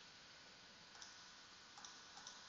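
Near silence: room tone with two faint clicks, about a second in and near the end, as at a computer.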